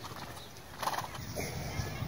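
Horse moving under its rider, quiet hoofbeats on the sandy arena footing, with a short louder sound about a second in.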